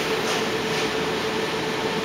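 Steady machine noise: a constant hum over an even hiss that does not change.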